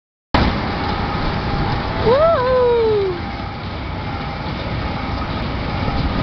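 Steady mechanical rumble of a fairground kiddie ride running, with fair noise around it. About two seconds in, a person's drawn-out vocal call rises and then falls.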